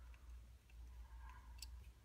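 Near silence with a few faint metal clicks from a small screwdriver turning a Chicago screw that isn't tightening; the screw looks too short to reach its threads.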